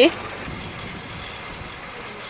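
Steady hiss and rumble of a car driving, heard from inside the cabin.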